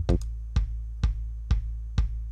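A looped electronic kick drum played alone, one hit about every half second, each hit leaving a long low boom. Its boom sits at about 55 Hz (the note A), out of key with a song in C.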